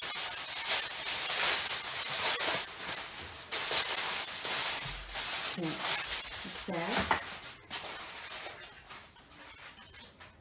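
Aluminum foil crinkling and rustling as a sheet is cut and pressed into a baking dish: a dense crackle that thins out and fades over the last few seconds.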